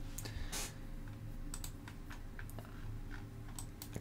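Scattered light clicks from a computer keyboard and mouse while a chart is being worked on, irregular and a few at a time. A faint steady low hum runs underneath.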